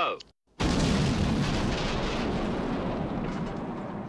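A large explosion from a film soundtrack, set off at the end of a countdown. It hits suddenly about half a second in, after a brief silence, and its rumble slowly dies away.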